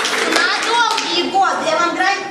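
Audience clapping, with voices calling out over it.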